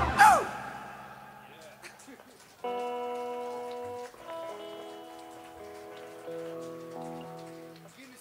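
A rock band's song ends right at the start, its last chord ringing away with a short falling guitar slide. About two and a half seconds in, a Hammond XK-1 stage keyboard plays soft held organ chords, changing them a few times and stopping just before the end.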